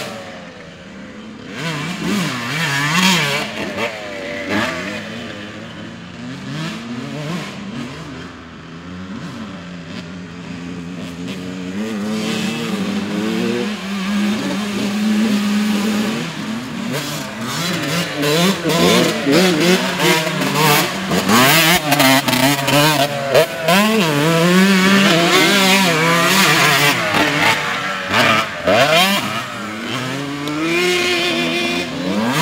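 Dirt bike engines revving up and down through the gears as riders lap a muddy track. The sound is quieter early on, while the bikes are farther off, and grows louder from about halfway, with a bike passing close near the end.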